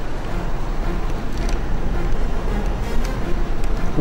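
Steady low hum and noise inside the cabin of a Volkswagen Routan minivan standing with its power on, heard from inside the van.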